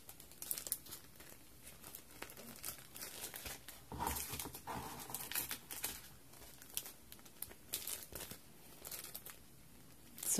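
Clear cellophane bags crinkling in irregular, scattered crackles as they are handled and shuffled, a little louder about four seconds in.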